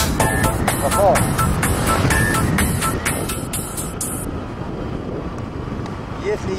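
An electronic dance track with a steady hi-hat beat fades out and stops about four seconds in. That leaves the steady rush of wind and engine noise from a motor scooter being ridden along a road.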